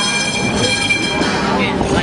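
Busy street ambience with people talking, and a high, steady squeal that stops about two-thirds of the way through.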